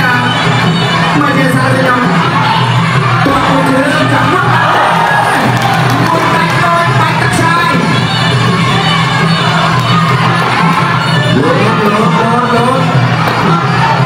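Fight crowd shouting and cheering without a break over the ringside music that accompanies a Kun Khmer bout, with a wavering melody line above a steady low drone.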